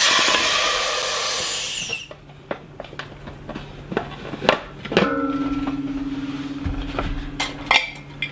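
Air hissing into a vacuum canner through its just-opened valve, loud at once and fading over about two seconds as the vacuum is released, which pushes the jar lids down to seal. Then knocks and clatter from handling the metal canister, and a steady low hum for about three seconds near the end.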